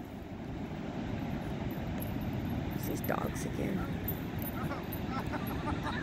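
Steady rushing noise of ocean surf and wind on the microphone, with a few faint, brief voice-like sounds around the middle and near the end.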